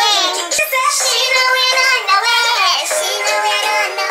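A dancehall song playing, with a singer's voice carrying the melody throughout.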